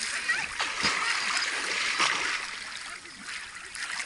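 Lake water splashing as a boy runs through the shallows into the water, dying down after about two seconds.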